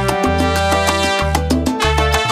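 Salsa music: an instrumental passage with a moving bass line and steady percussion, no singing.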